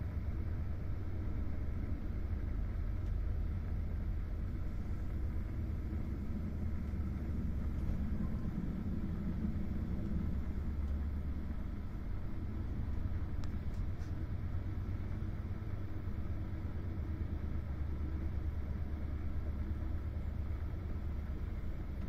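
Steady low rumble of an InterCity passenger coach running at speed, heard from inside the carriage: wheel and track noise carried through the body of the coach.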